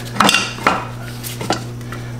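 Metal clinks and knocks of parts and hand tools being worked in a car's engine bay: a couple of sharp clicks near the start, another just past half a second, and two more about one and a half seconds in, over a steady low hum.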